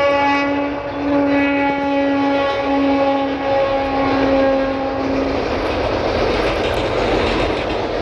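Electric local train (EMU) sounding its horn in several long, steady blasts with short breaks, the horn stopping about five seconds in. After that comes the steady rumble of the train's wheels and coaches as it crosses a steel girder railway bridge.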